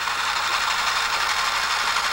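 Late-1980s Hitachi-built RCA VPT630HF VCR rewinding a VHS tape at speed, a steady whir of the reels spooling, with the tape unloaded from the head drum.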